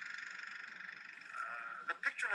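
A steady high hiss with a fast flutter, the noise of an old archival film soundtrack playing under its opening title card. It ends with a short click near the end.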